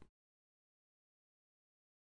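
Silence: the audio track is digitally silent, with no sound at all.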